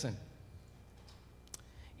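A pause in speech through a podium microphone: faint room tone, broken by a single short click about one and a half seconds in.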